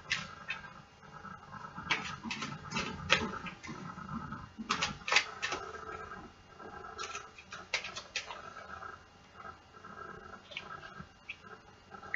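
A deck of playing cards being shuffled by hand: irregular soft clicks and rustles of the cards slapping and sliding together.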